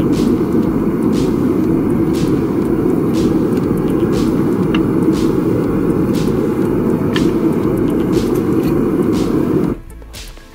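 Propane burner on a small melting furnace running steadily at full flame, cut off suddenly near the end as the gas is shut off.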